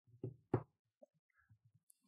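Laptop being used on a desk: two thumps about a third of a second apart, then a few faint taps.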